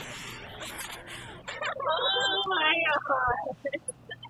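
Audio played through a Max/MSP pfft~ spectral frequency gate, with each frequency bin sliding on and off over two FFT frames. Partials still hop in and out, giving a warbling, bubbly processed tone that is loudest in the middle and breaks into scattered blips near the end. It opens with a short laugh.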